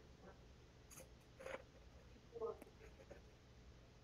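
Near silence: room tone with a few faint short clicks and small handling noises, the loudest about two and a half seconds in.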